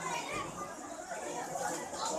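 Crowd of schoolchildren chattering, many voices overlapping in a steady babble with no single voice standing out.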